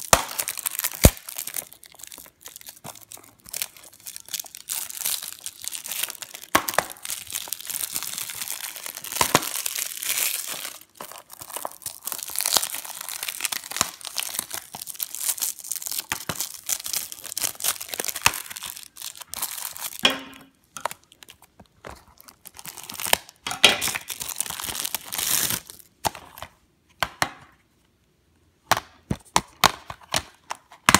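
Plastic shrink wrap being torn and crinkled off a Blu-ray case: a dense, crackling rustle with many sharp snaps. It stops for a moment near the end, followed by a few sharp clicks.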